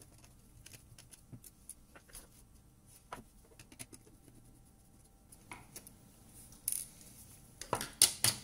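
Faint, scattered clicks and taps of a small screwdriver working on the goggles' circuit board and plastic shell, with a few louder clicks near the end.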